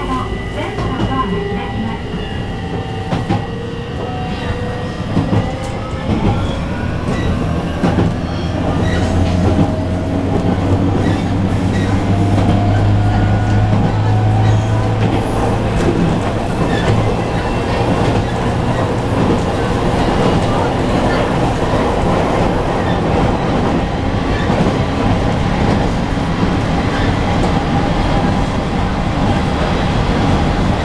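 JR Kyushu 815 series electric train running: traction motors whine in several tones that climb in pitch over the first several seconds as the train gathers speed. The whine gets louder about nine seconds in and then settles into steady wheel-on-rail running noise.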